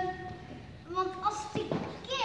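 Young children's high-pitched voices calling out, with a drawn-out call at the start and more short calls about a second in.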